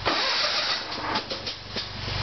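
Sears Suburban garden tractor engine being cranked by its electric starter on a cold start, after dying because the choke was not reached in time. It makes a hissing whir with an uneven clatter and fires up again at the very end.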